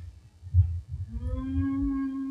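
A dull low thump, then about a second in an eerie sustained drone fades in: one steady low pitch with overtones, held unchanging, typical of a theatrical sound cue setting a spooky mood for a séance.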